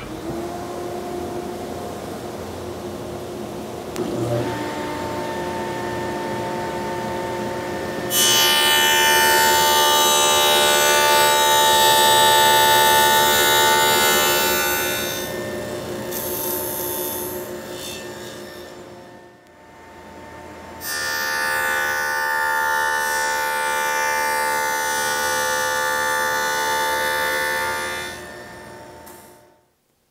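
Table saw spinning a dado stack, with two louder stretches of several seconds each as a sled carries the case sides through to cut finger joints. Background music plays over it.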